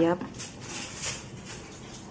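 One spoken word, then faint handling noise of kitchenware being moved, with a couple of soft knocks.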